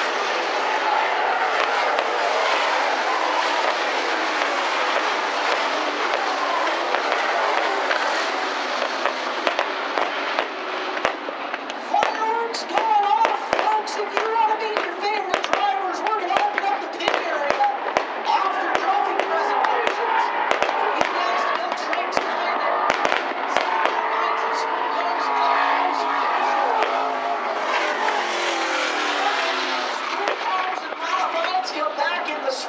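Fireworks going off: a rapid, irregular run of sharp pops and crackles starts about ten seconds in and continues, over a steady, loud noisy background.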